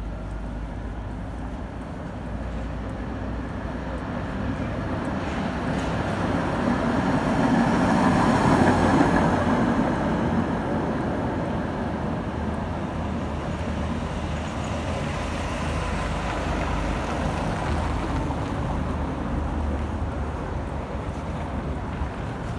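City street traffic: a vehicle passes close by on the cobbled street, loudest about eight to nine seconds in, then fades back into a steady hum of traffic.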